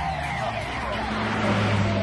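Electronic dance music in a breakdown: the beat drops out under a held low bass note while synth sweeps glide downward, and the highs are filtered away near the end.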